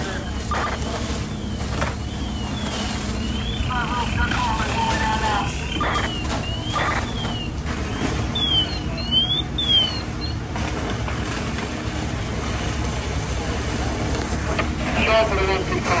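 Steady low rumble of fire apparatus diesel engines running at the scene, with a high tone sliding up and down several times through the first two-thirds.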